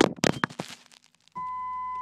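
An edited sound effect: a short burst of noisy crackling that dies away within the first second, then, about one and a half seconds in, a steady high electronic beep starts, the tone that signals a broadcast interruption.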